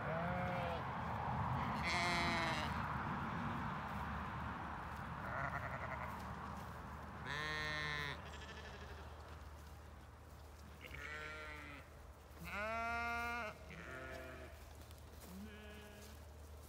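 Zwartbles sheep bleating, about eight separate calls spread across the few seconds, some high and thin, others deeper and drawn out; the longest, deepest bleat comes near the end.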